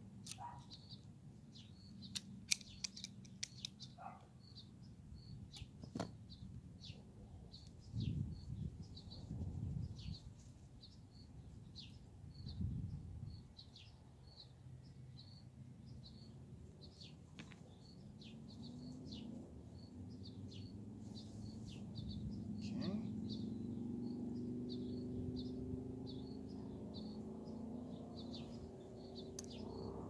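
A bird chirping over and over, about twice a second, with a few small sharp clicks of pliers working wire in the first seconds; a low hum rises in the background in the second half.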